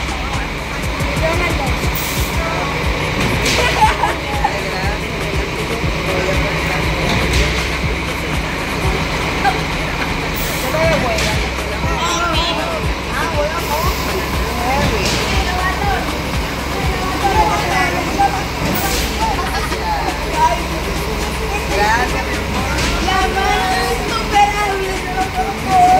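Several girls' voices chattering and squealing over one another in excitement, over a steady low hum.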